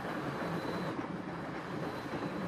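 Steady rumble and hiss of a freight train of open wagons rolling along the track.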